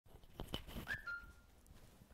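A few faint clicks, then a brief high whistle-like tone that dips slightly in pitch at its start and holds for about half a second.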